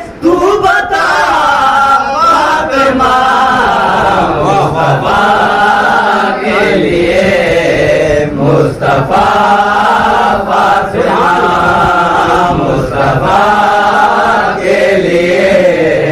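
Male voices chanting a devotional Urdu poem without instruments, in long, held, wavering lines.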